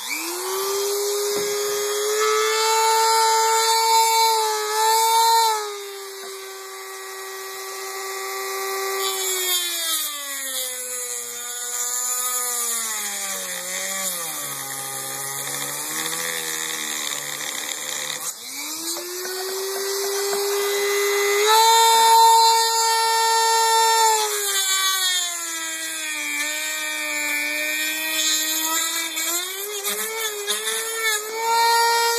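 Dremel rotary tool with a cutting wheel whining as it cuts through the folding-grip mount on an airsoft MP7's body, louder and harsher while the wheel bites. Through the middle the motor slows and drops well in pitch, stops briefly, then spins back up and cuts again.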